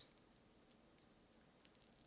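Near silence: room tone, with a few faint light clicks near the end.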